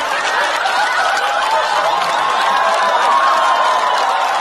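A large studio audience laughing loudly and steadily, many voices together, with scattered clapping.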